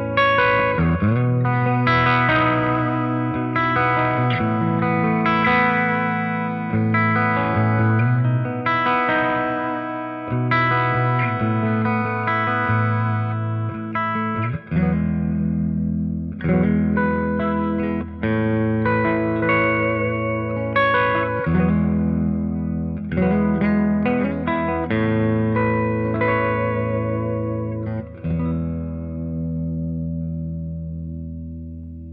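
Gretsch G2622TG-P90 Streamliner centre-block electric guitar with P90 pickups, played amplified: chords and single-note lines ringing out continuously, with a few notes bent in pitch.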